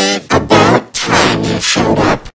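Cartoon character voices heavily distorted by audio effects: warped, garbled syllables whose pitch bends up and down, more a mangled sung line than intelligible speech.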